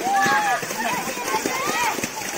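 Overlapping voices of boys calling out and shouting, with the steady rush of a small waterfall's water underneath.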